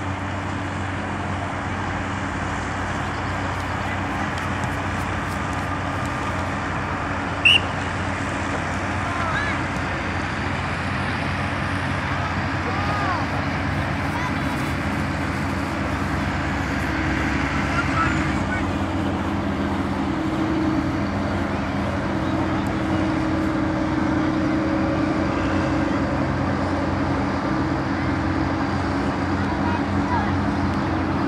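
Open-air soccer match sound through a camcorder microphone: a steady low hum and noise, with distant shouts from players and spectators. A short, loud referee's whistle blast about seven and a half seconds in.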